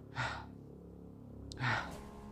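A man's breaths close to a clip-on microphone: two short audible breaths, one just after the start and one near the end.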